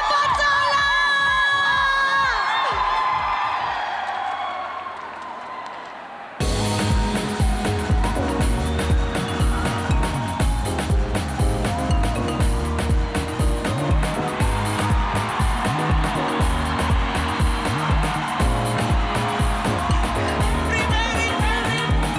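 A woman's voice holds a long sung note with vibrato over backing music, fading away. About six seconds in, a live band cuts in abruptly with a steady driving beat and bass for a dance song, and singing comes back in near the end.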